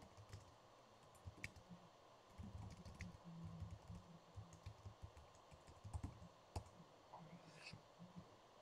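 Faint, scattered clicks and soft taps of a computer keyboard and mouse, a few seconds apart, over quiet room tone.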